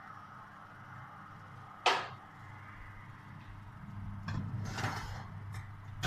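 Handling at an open kitchen oven: one sharp knock about two seconds in, then a scraping, rustling stretch around four to five seconds, over a steady low hum.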